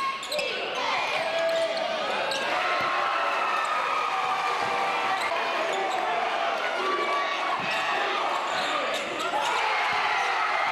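Basketball game in a gymnasium: a ball bouncing on the hardwood floor amid a steady din of crowd and player voices, with occasional shouts echoing in the hall.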